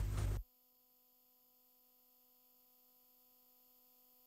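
Near silence: the broadcast's sound cuts off about half a second in, leaving only a faint steady hum.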